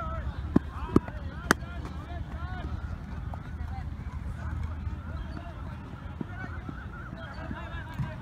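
A flock of birds calling over one another, a steady chatter of short rising-and-falling calls, over a low rumble. Three sharp knocks come within the first second and a half.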